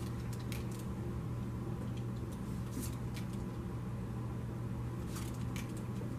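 Tarot cards being dealt and laid down on a table: short card slaps and slides come in three small clusters, a couple of seconds apart. A steady low hum sits underneath.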